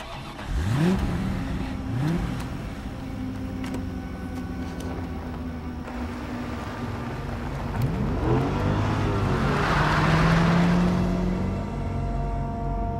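Car engine revving up twice in quick rising sweeps, then running steadily. Later it rises and falls in pitch again, and a swell of rushing noise builds near the end.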